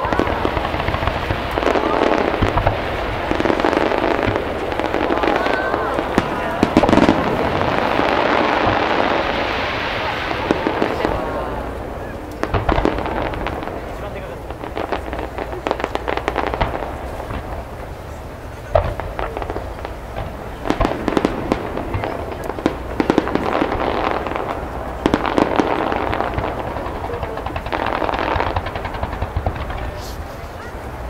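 Fireworks display: aerial shells going off in a rapid run of bangs and crackling for the first ten seconds or so. After that come sparser bursts in clusters, with a few single loud bangs.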